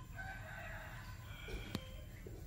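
A rooster crowing faintly, one crow about a second and a half long, followed by a short sharp click near the end.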